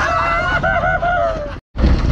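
A man laughing in a high, wavering voice over a low engine rumble; the sound cuts out abruptly for a moment near the end.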